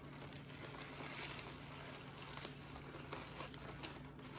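Faint rustling and light crinkling of paper gift-basket shred being pushed by hand into a wicker basket, with small scattered clicks over a steady low hum.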